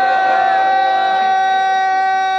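A man's voice holding one long sung note of a qasida, steady in pitch, over a microphone and PA.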